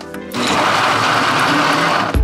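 Ninja countertop blender starting about a third of a second in and running at full speed, crushing ice into fruit juice for a smoothie, then stopping suddenly near the end.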